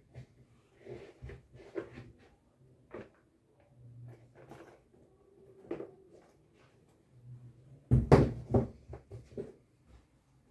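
Used shoes being handled on a floor sheet: soft rustling and light knocks as a pair is picked up, turned over and set back down. A louder clatter about eight seconds in as shoes are put down among the others.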